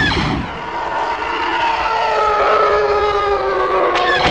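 A loud, engine-like rushing roar used as an intro sound effect, carrying several slowly falling tones. It starts over again with a fresh burst near the end.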